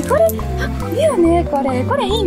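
Background music with a steady stepping bass line and a sliding, arching melody above it.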